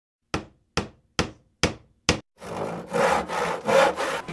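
Five hammer blows on wood, evenly spaced a little over two a second, each dying away quickly. They are followed by three or four rasping hand-saw strokes through wood.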